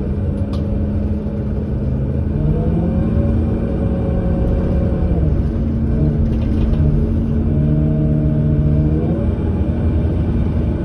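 Cabin sound of a 2008 New Flyer C40LF bus under way, its Cummins Westport ISL G natural-gas engine and Allison automatic driveline giving a steady low rumble. The engine tones rise a few seconds in, dip in the middle and rise again near the end as the bus pulls along.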